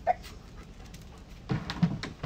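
A dog makes a short, breathy sound about one and a half seconds in.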